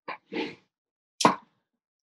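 A few short mouth clicks and a quick breath close to a microphone, with a sharp click about a second in.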